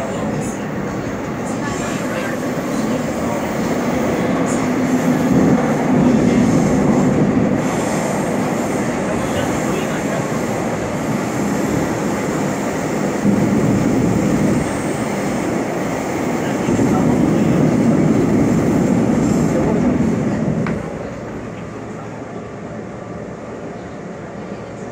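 Seoul Subway Line 2 train running through a tunnel, heard from inside the car: a steady rumble of wheels on rail that swells louder twice and eases off near the end.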